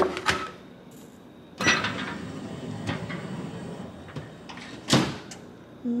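Stainless Viking microwave drawer being loaded and closed. A click as the food container goes in, a couple of seconds of sliding noise, then a loud thud as the drawer shuts about five seconds in.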